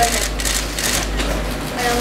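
Camera shutters clicking in quick, irregular bursts, several cameras at once, over background chatter and a steady low hum.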